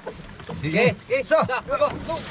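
Men's voices talking and calling out, with no other clear sound above them.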